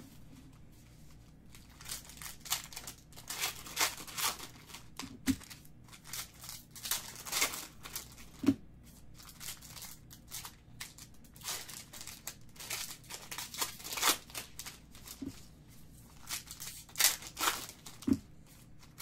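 Foil trading-card pack wrappers being torn open and crinkled by hand: repeated irregular rustling and tearing of the foil, with a few brief thumps, the loudest about eight and a half seconds in.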